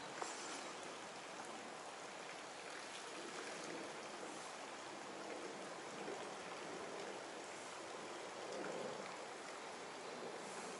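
Steady sound of running water, as from a stream or small inflow, swelling slightly near the end.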